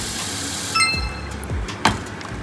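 Tap water running onto oysters in a stainless steel pot, stopping under a second in with a short ringing metallic clink from the pot. A sharp click follows near the end.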